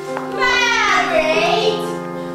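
A woman's voice sings a long note that slides down in pitch, starting about half a second in, over held keyboard chords.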